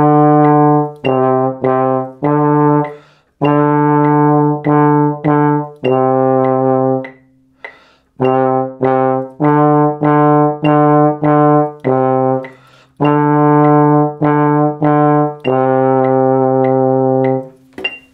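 Trombone playing a slow exercise on low C and D: separate notes, short and longer ones in phrases with brief rests, ending on a long held note.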